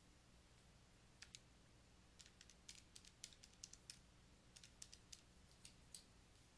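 Near silence broken by faint, quick clicks of keys being pressed in irregular runs: calculator buttons being keyed to divide 934 by 40.7.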